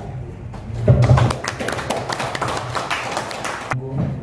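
Audience applauding: a run of many hand claps that starts about a second in with a low thump and cuts off abruptly near the end.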